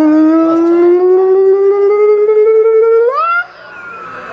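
A young man's loud, long held vocal "aah", his pitch creeping slowly upward for about three seconds, then sweeping up sharply and breaking off.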